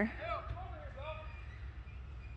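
Steady low rumble of road-work machinery, with faint voices wavering over it during the first second.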